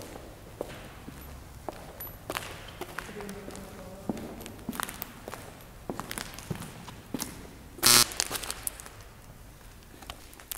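Footsteps on a gritty, debris-strewn concrete floor, irregular, with one short, much louder scrape or crunch about eight seconds in.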